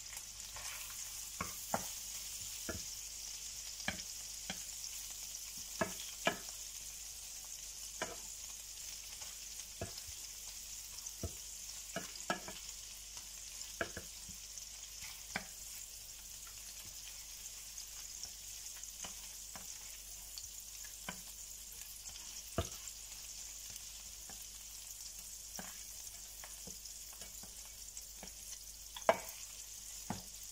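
Prawns and chopped garlic sizzling steadily in oil in a frying pan, with irregular taps and scrapes of a wooden spatula turning them; the sharpest tap comes near the end.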